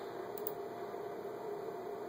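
Steady room tone: an even low hum and hiss, with a faint click about half a second in.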